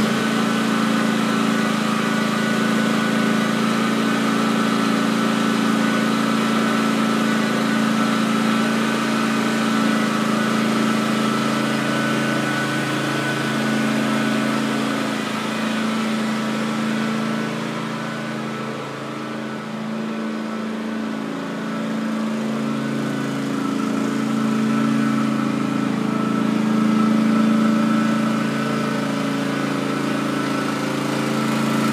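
John Deere riding lawn tractor's small gasoline engine running steadily as the tractor drives, growing a little quieter for a few seconds past the middle before picking back up.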